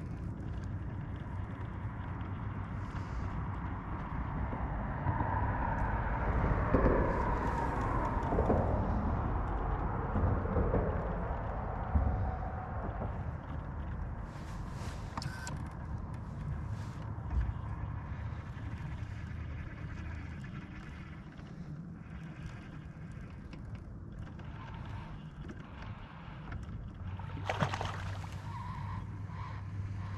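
A vehicle passing by, growing louder and then fading over several seconds with a falling pitch, over a steady low hum.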